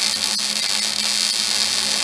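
Wire-feed welder arc sizzling steadily as a steel track bar mount is welded onto a Dana 60 axle housing, over a constant low hum from the welder.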